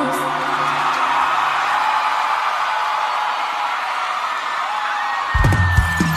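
A live brega concert opening: a crowd cheering and screaming over a held keyboard note, then the band's drums and bass come in heavily about five seconds in.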